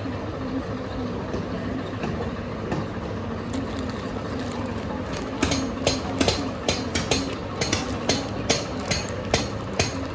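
A green handheld bundle is swept and struck repeatedly over a person: from about five seconds in, a rapid run of sharp swishing slaps, about four a second. A steady mechanical hum runs underneath.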